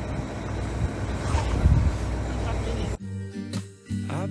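Wind buffeting the microphone over a low, steady rumble from the narrowboat's idling engine. About three seconds in, this cuts off suddenly to acoustic guitar music.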